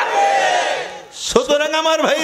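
A man's loud, hoarse, breathy cry lasting about a second, then, after a short breath, his voice resumes in drawn-out, chanted sermon delivery.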